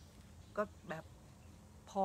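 A woman's voice speaking Thai: two short words with pauses around them, then speech resuming near the end, over a faint steady hum.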